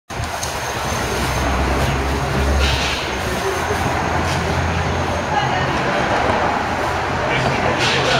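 Steady low rumble and hum from a nearby machine or traffic, with indistinct voices in the background and a few brief knocks.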